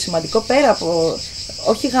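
Steady, high-pitched chorus of insects chirring without a break, under a woman's conversational speech.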